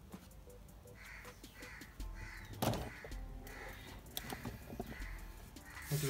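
A bird calling over and over, about two calls a second, with a single sharp knock a little before halfway.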